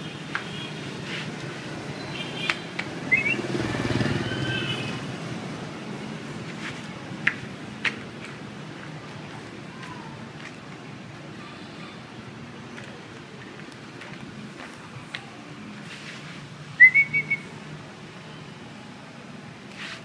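A person giving short, rising high-pitched whistles to call a puppy: one about three seconds in and a louder one near the end, followed by a few quick chirps. Scattered sharp clicks and a steady low street rumble run underneath.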